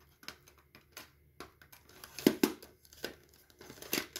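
Plastic cassette and CD cases being handled and set down: a run of light clicks and rattles, the loudest a quick double clack about two and a quarter seconds in and another just before the end.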